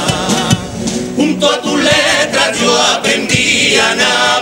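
Male carnival comparsa singing a pasodoble in Spanish, several voices together, with a few sharp strikes from the accompaniment.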